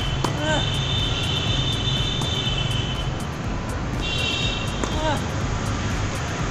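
Jet aircraft engine noise: a steady low rumble under a high whine of several close steady tones, which breaks off about three seconds in and returns about a second later. A few short bird chirps are heard near the start and again about five seconds in.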